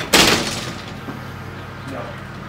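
A door being pushed open: one sudden loud bang just after the start that dies away over about half a second, followed by a steady low hum.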